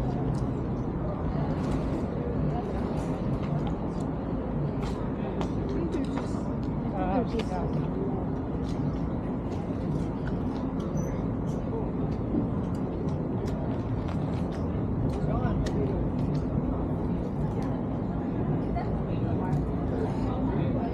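Busy street ambience: people talking among themselves, over a steady low rumble of city traffic, with scattered light clicks.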